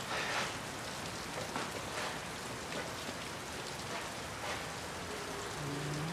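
Steady hiss of light rain. A few held musical notes come in near the end.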